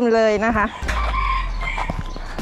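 A rooster crowing, its long held note ending less than a second in.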